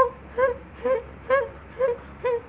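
A beatboxer's voice making short, pitched vocal notes in a steady beat, about two a second, each bending quickly up and back down in pitch.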